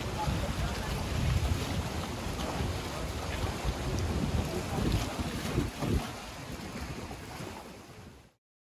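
Wind buffeting the microphone in gusts over the wash of sea waves against rocks, fading out near the end.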